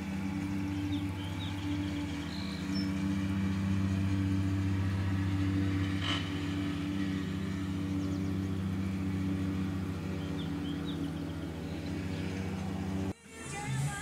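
A steady low mechanical hum, even in pitch and level, like a motor or engine running without change; it cuts off abruptly about a second before the end, with a few faint high chirps over it.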